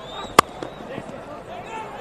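A cricket bat striking the ball: one sharp crack, a little under half a second in, over faint stadium crowd noise.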